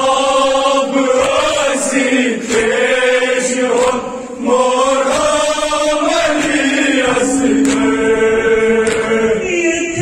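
Voices chanting a Kashmiri noha, a Shia mourning lament, in long wavering sung phrases with a short break about four seconds in.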